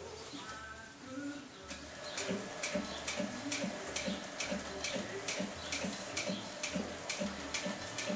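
Artisan 5550 Big industrial sewing machine top-stitching leather boot shafts, run slowly through a speed reducer: each stitch gives an even click, about two a second, starting about two seconds in over a low motor hum.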